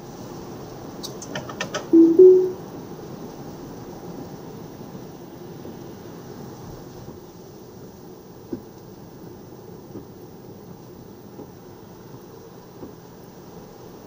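Inside a Tesla Model Y on a wet road: a few quick clicks from the steering-column stalk, then about two seconds in a loud rising two-note chime, the sound of Autopilot engaging, over steady tyre and road noise.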